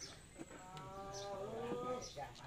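A single long, drawn-out vocal call with a clear pitch that rises slightly, starting about half a second in and lasting about a second and a half.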